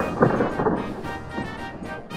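Background music, with a rumbling clatter near the start as a plastic toy engine tips off the end of the track and falls.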